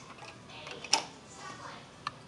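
A single sharp click of hard plastic about a second in, as a small toy charm is set down into the plastic cup of a Glitzi Globes base.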